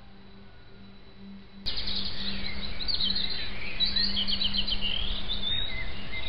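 Songbirds singing in quick, high chirps and trills that start abruptly with a click about one and a half seconds in, after only a faint hum and hiss.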